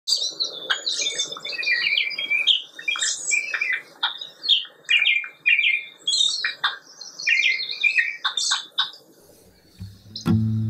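Songbirds singing: a run of quick, varied chirps and short trills, with brief pauses between phrases, stopping about nine seconds in.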